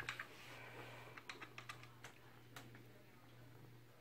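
Faint run of light, sharp plastic clicks and taps as a cat noses and shifts a stacked plastic puzzle feeder, bunched in the first two and a half seconds and then trailing off, over a steady low hum.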